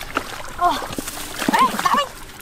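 Hands splashing and sloshing in shallow muddy water, with short shouted calls from a voice about half a second in and again near the end.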